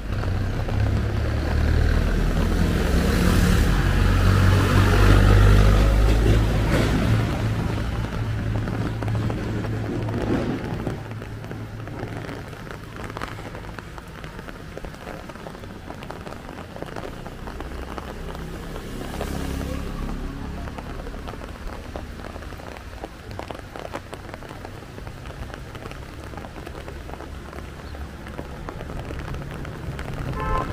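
Wet-street ambience: an even hiss of rain and tyres on wet tarmac. A heavy low rumble of passing traffic is loudest about five seconds in and fades by about eleven seconds, then returns more softly later on.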